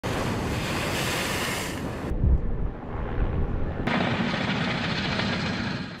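Heavy storm surf crashing and churning, with wind noise. The sound changes abruptly twice, about two seconds in and again just before four seconds, and a deep thump comes a little after two seconds.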